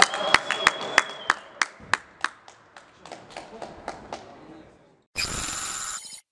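Hand clapping in a steady rhythm, about three claps a second, fading away over some four seconds, with a high steady ringing tone through the first second and a half. About five seconds in, a loud burst of hissy electronic sound with ringing tones starts and cuts off after about a second.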